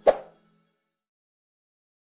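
A single short pop: an interface click sound effect as the animated cursor presses a Subscribe button, heard over the last faint tail of fading outro music.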